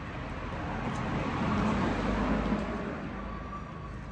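A road vehicle passing by: its engine and road noise rise to a peak about halfway through, then fade away.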